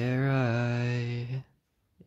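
A low-pitched voice singing one long, steady syllable like a chanted 'dun'. It stops about a second and a half in.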